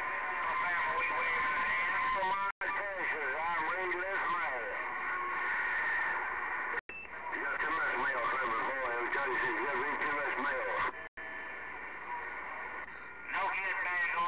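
CB radio receiver playing garbled, overlapping voices of distant stations through static, with a steady whistle over the first two seconds. The audio drops out for an instant three times.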